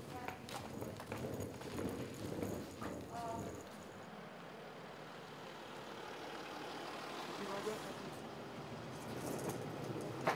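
A car driving slowly up a driveway, a steady tyre-and-engine noise that grows gradually louder as it approaches. Faint voices and a few footstep-like clicks come first.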